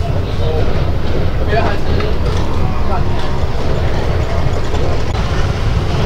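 Indistinct voices over a loud, steady low rumble.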